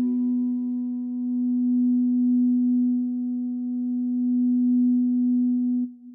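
A single low held electronic tone, nearly pure with faint overtones, wavering slowly in loudness; it stops abruptly near the end with a short trailing fade.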